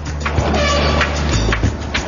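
Tunnel muck car dumping crushed rock through a steel grate: rough, continuous machine and spilling-rock noise with a few sharp knocks, over a steady low drone.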